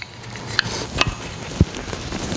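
A few small metal clicks and a short low thump as a packing gland is pressed down over a jet pump's shaft onto the packing rings.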